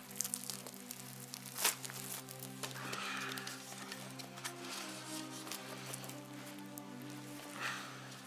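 Background music of steady held low chords, over the crackle of a round bread loaf's crust being torn open by hand, with a few sharper cracks.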